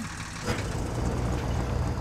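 Sound effect of a cartoon monster truck's engine: a low, steady rumble that grows stronger about half a second in.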